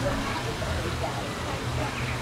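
Indistinct background voices of people talking over a steady low hum and noisy haze, with no clear words.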